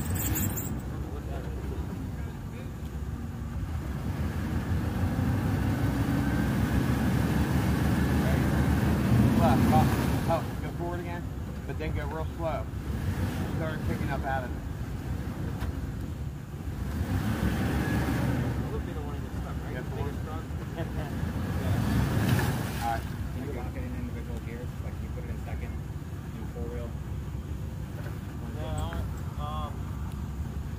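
Dodge Ram 1500 V8 pickup's engine running under load and revving up in three long swells as the truck, stuck in deep mud, is driven back and forth to rock it free.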